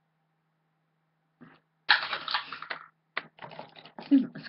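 Faint steady hum, then about two seconds in a loud spell of rustling and clattering close to the microphone, followed by a click and a few smaller rattles near the end, as of small objects being handled and put down.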